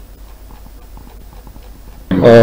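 Quiet background sound from an open-air site: a steady low hum under a faint haze, with soft scattered clicks.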